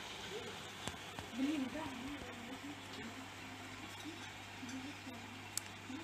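Faint, indistinct voices talking in the background over a steady low hum, with a couple of faint clicks.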